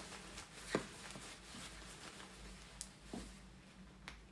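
Soft rustle of quilted jacket fabric being handled, with a few faint clicks as sewn-on snap fasteners on the sleeve are worked open; the snaps are new and still stiff.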